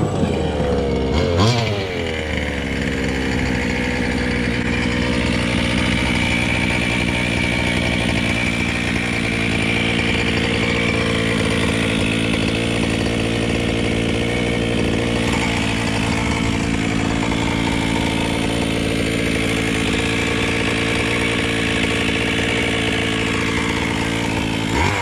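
Losi MTXL 1/5-scale RC monster truck's gas two-stroke engine, revving up and down briefly as the truck comes in, then idling steadily close by.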